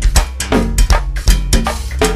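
Go-go band groove (a 'pocket'): drum kit and cowbell play a driving, syncopated beat over a steady low bass.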